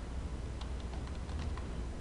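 Computer keyboard typing: a run of quiet, irregular keystroke clicks over a low steady hum.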